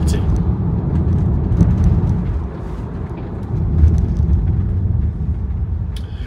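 Steady low rumble of a car's engine and tyres on the road, heard from inside the cabin while driving, dipping a little about halfway through before rising again.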